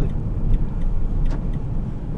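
Steady low rumble of a vehicle's engine and tyres heard from inside the cab as it drives, with a faint click about a second in.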